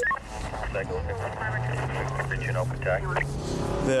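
Police patrol car's engine running as the car pulls away, a steady low hum that starts about a second and a half in, with a brief beep right at the start and indistinct voices over it.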